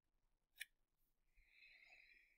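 Near silence: room tone, with one faint short click just over half a second in and a faint, brief scratchy hiss near the end.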